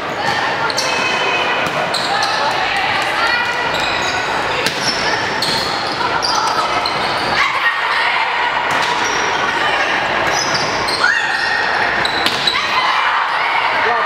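Volleyball rally in a large, echoing gym: players and spectators calling and shouting over steady crowd chatter, with sneakers squeaking on the hardwood court and the ball being struck.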